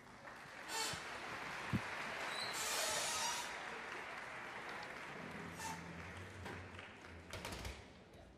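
Audience applauding, swelling over the first few seconds and then fading away, with a few scattered knocks near the end.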